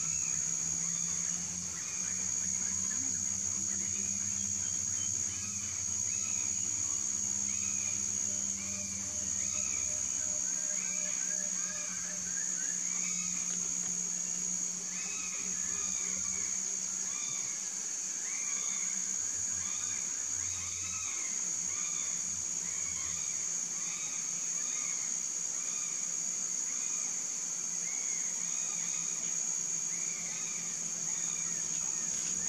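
Tropical forest ambience: a steady high-pitched insect drone with many short bird chirps and calls scattered throughout, over a low steady hum.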